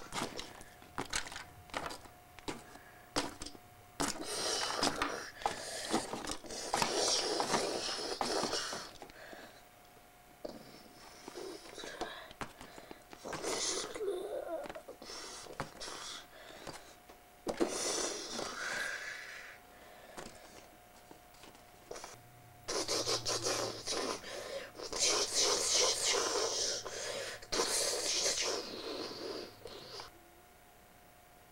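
A child's mouth-made monster sound effects: breathy, hissing roars and crash noises in several bursts of a few seconds each. Sharp clicks and knocks of plastic toys come in the first few seconds.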